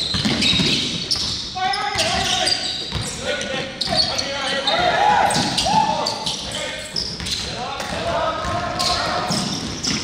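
Basketballs bouncing on a hardwood gym floor in a steady scatter of sharp thuds, with short high sneaker squeals and players' voices, all echoing in a large gym.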